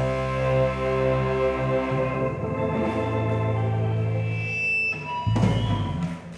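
Live rock band holding out the closing chord of a song, with sustained guitar, bass and keyboard notes and the low note changing about two seconds in. The full band then comes down on a loud final hit about five seconds in, which stops just before the end.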